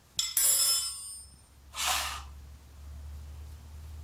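A steel spanner put down on a concrete floor, clattering and ringing for about a second. About two seconds in, a short rushing sound.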